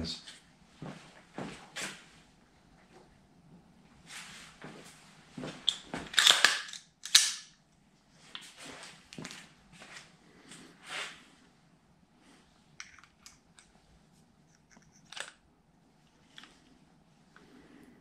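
Scattered handling noises: rustling as sheets of paper are set up on a target stand, then clicks and rattles from an M4-style rifle being picked up and handled. The loudest rustling comes about six to seven seconds in.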